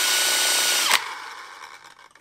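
Cordless Makita drill running at a steady speed, spinning a homemade ABS-pipe spray paint can shaker; its steady whine cuts off about a second in and a quieter noise fades out after it.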